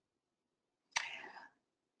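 Silence, then about a second in a short, breathy intake of breath by a person that starts sharply and fades within half a second.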